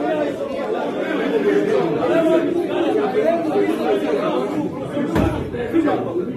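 Crowd chatter in a large hall: many men talking over one another at the same time. About five seconds in there is one low thump.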